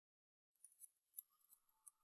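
Near silence broken by faint, high-pitched clicks and ticks that start about half a second in.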